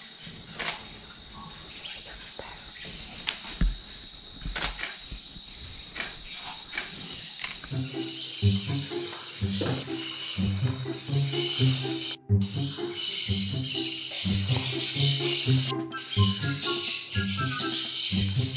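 Rainforest insects buzzing steadily with a few sharp clicks, then from about eight seconds in, background music with a stepping bass line and a beat comes in and covers them.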